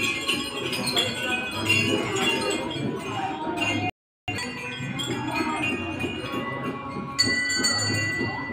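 Temple bells and chimes ringing continuously over a steady low beat of devotional music, as during aarti; a fresh, clear bell tone rings out near the end. The sound breaks off for a moment about halfway through.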